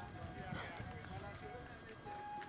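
Faint hoofbeats of horses walking on a dirt trail, mixed with distant voices.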